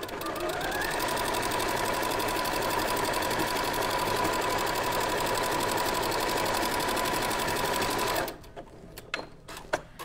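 Janome Sewist 780DC computerized sewing machine stitching: its motor whine rises in pitch as it gets up to speed over the first second, then it runs evenly with rapid needle strokes, stopping abruptly about eight seconds in.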